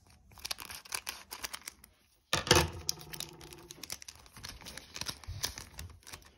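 A foil trading-card booster pack crinkling and crackling as it is cut open with scissors and the cards are pulled out. After a brief break a little over two seconds in comes a sudden loud crackle, the loudest moment, then softer rustling and clicks.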